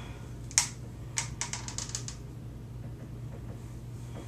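Clicking of a hair flat iron and plastic straightening comb being drawn down through a section of hair: one sharp click about half a second in, then a quick run of about eight light clicks over the next second, over a steady low hum.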